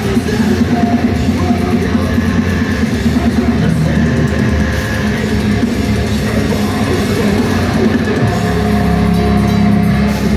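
Live deathcore band playing: heavy distorted guitars, bass and drums, loud and unbroken.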